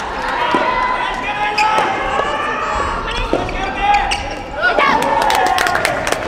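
A soft tennis rally on a wooden indoor court: the rubber ball is struck by rackets and bounces on the floor several times, each a sharp pop. Long, drawn-out shouts from the team benches run underneath.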